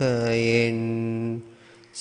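A Buddhist monk's single male voice chanting in Sinhala, holding the last drawn-out syllable of a meditation line on one note that fades out about a second and a half in, leaving a brief pause.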